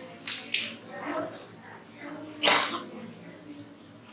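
Classroom chatter: children's voices talking indistinctly, with two short, loud, sharp bursts, one just after the start and one about halfway through.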